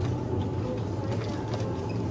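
Steady low hum of supermarket background noise, with a few faint light clicks.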